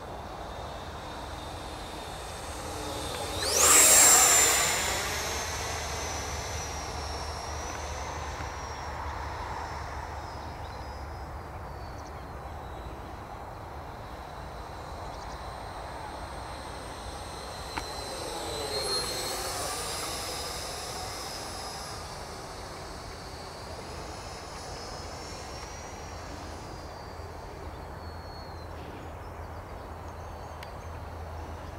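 Arrows Hobby Marlin 64 mm electric ducted fan jet model flying past. Its whine is loudest about four seconds in and falls in pitch as it moves away. A second, fainter pass comes about nineteen seconds in.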